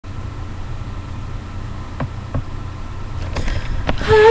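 Steady low outdoor rumble, with a few faint clicks in the second half.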